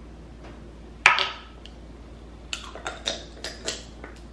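A metal spoon clinks sharply against a ceramic bowl about a second in, with a short ring. A quick run of about six lighter clicks and taps follows near the end as the spoon and a small glass jar are handled.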